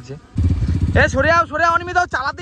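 A vehicle engine running close by, a low, rapidly pulsing sound that starts about a third of a second in, with men's voices talking over it.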